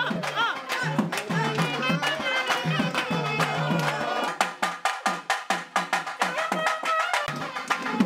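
Rhythmic music with drums and a wavering high melody. About four seconds in, a run of rapid drum strokes takes over and lasts until about seven seconds.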